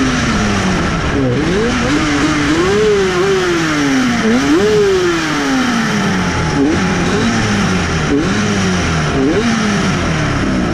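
Classic race motorcycle engine heard onboard at racing speed, with wind rushing past. The revs fall, climb and fall again through the corners, and in the second half several short throttle blips jump the pitch up while the note steps down overall.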